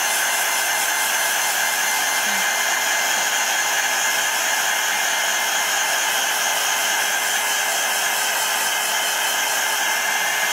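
Handheld craft heat tool running at a steady pitch, a constant motor whine over the rush of hot air, as it is waved over a painted journal page to dry it.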